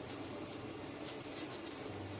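Salt pouring from a salt canister into a pot of broth: a faint, grainy hiss in the second half, over a low steady hum.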